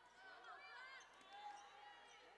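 Near silence: faint arena ambience from a basketball game in play, with distant voices.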